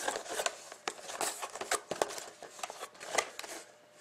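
Plastic shrink-wrap on a sealed trading-card box crinkling in irregular crackles as hands grip and turn the box over, dying away near the end.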